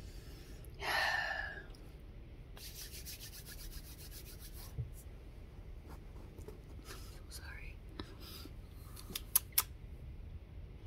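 Close, quiet rubbing and handling noises. A short breathy, whisper-like sound comes about a second in, then a quick run of fast rubbing strokes, and two sharp clicks near the end.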